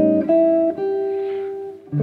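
Clean archtop jazz guitar playing a short single-note melody over an A7 voicing: two higher notes, then a lower one that rings and fades. A new Dm7 chord is struck just before the end.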